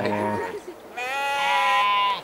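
A sheep bleating: one long, high-pitched bleat from about a second in, after a short, deeper 'meh' at the very start.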